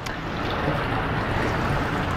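Steady rush of water pouring from a PVC pipe into a plastic tank, over the low hum of the filter skid's self-priming pump running while it re-primes.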